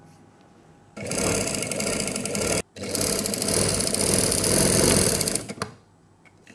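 Electric domestic sewing machine running as the neck facing is stitched on: two runs, the first from about a second in, a brief stop, then a longer second run that ends shortly before the end.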